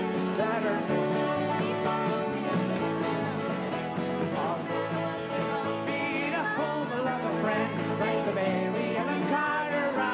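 Live folk song with acoustic guitar strummed steadily under a male lead voice and female harmony voices singing together.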